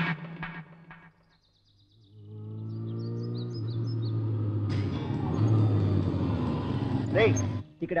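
Motorcycle engine rising in pitch as it revs, about two seconds in, then settling into a steady low running note.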